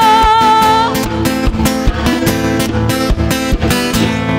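Live music: acoustic guitar strummed in a steady rhythm, with a long sung note wavering in vibrato that ends about a second in.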